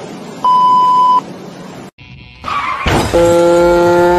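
A short high beep like a censor bleep, then a sudden loud crash that leads straight into loud music of held, steady notes.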